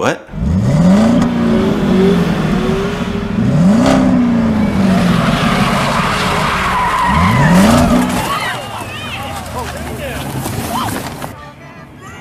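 Ford Mustang V8 doing a burnout: the engine revs hard three times, each rev rising and then falling back, over the steady squeal of spinning rear tyres. The sound fades and cuts off shortly before the end.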